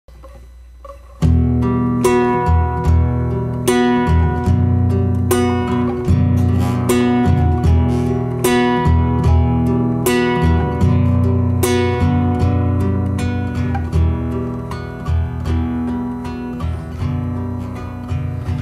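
Nylon-string classical guitar played solo, the song's instrumental introduction, coming in about a second in as a steady run of sharply struck chords and notes.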